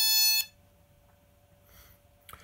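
AEE Toruk drone's radio controller giving a single short beep, about half a second long, as it powers on.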